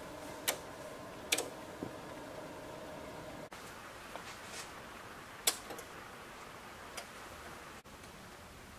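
Several sharp, scattered clicks of switches and controls on rack-mounted amplifiers and a mixing console being set, over a faint steady hum that stops a little after three seconds in.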